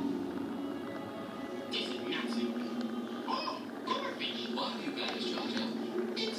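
Television soundtrack playing in a room: steady background music with voices and hissing sound effects coming in from about two seconds on.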